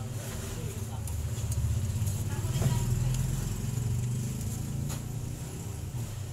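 A motor vehicle passing by: a low engine rumble that swells to its loudest a little before halfway and then fades away, with faint indistinct voices in the background.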